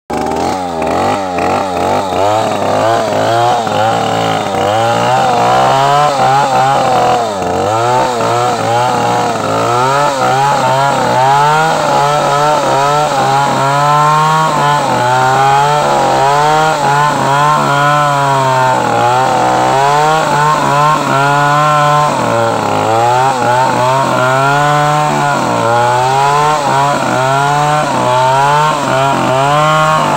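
Two-stroke chainsaw running at full throttle while cutting into the base of a tree trunk. Its engine note rises and dips again and again as the chain bites into the wood and frees up.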